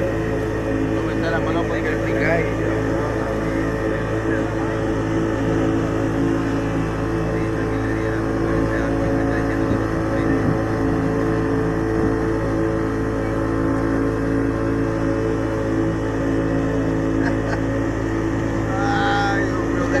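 Two-stroke outboard motor of an open passenger boat running steadily at a constant speed, with an even drone that holds one pitch.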